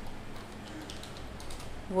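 Computer keyboard being typed on: a short run of soft keystrokes.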